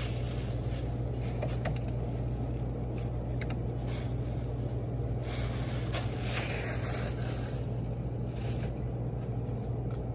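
Steady low hum of background machinery, with a plastic shopping bag rustling faintly a few times as items are bagged.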